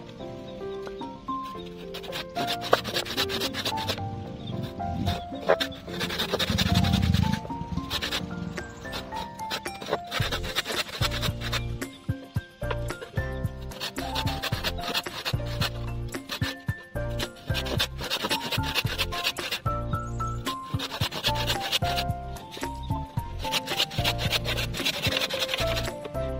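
A handsaw cutting kerfs into a wooden carving blank in several runs of quick back-and-forth strokes, with background music playing throughout.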